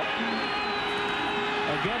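Football stadium crowd noise, a steady roar through the play, with a single held note through the middle of it.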